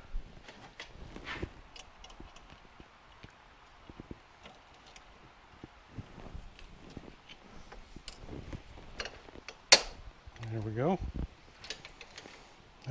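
Light metallic clicks and clinks of a motorcycle rear shock absorber being handled and turned by hand in a homemade spring compressor, with one sharp click about ten seconds in.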